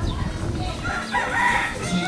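A rooster crowing once, starting about a second in, over a low rumble.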